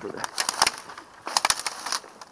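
Footsteps pushing through dry brush and dead twigs: a run of sharp crackles and snaps, in two bursts, the second about 1.3 seconds in.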